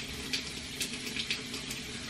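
Water running steadily from a bathroom sink tap.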